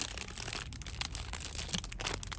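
Crinkly plastic product packaging being grabbed and handled by hand: a dense run of sharp crackles and rustles that starts suddenly.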